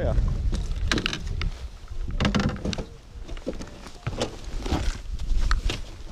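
Wind rumbling on the microphone, with scattered knocks and clunks of people moving and handling gear in a fishing boat; the camera is grabbed and jostled near the end.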